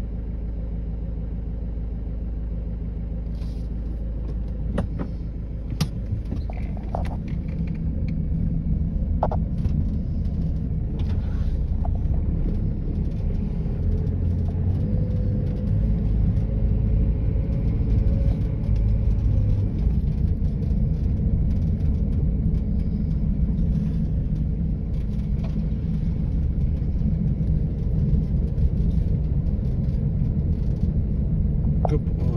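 Car running and rolling slowly along a rough single-track lane, a steady low rumble that grows louder a few seconds in as the car gets moving, with scattered small clicks and knocks, heard from inside the cabin.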